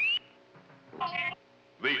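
Electronic beeps and whistles of an R2-D2-style robot: a rising whistle ends just after the start, then a short, steady beep comes about a second in.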